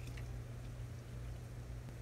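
Neem oil and dish soap mixture poured from a small bowl into a plastic garden sprayer jug of water, a faint trickle over a steady low hum, with a light tick near the start.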